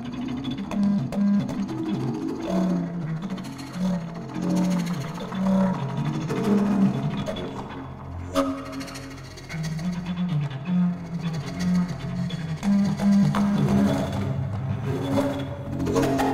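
Paetzold contrabass recorder playing a run of short, breathy low notes in an uneven pattern, blended with live electronics, with a sharp click about eight seconds in.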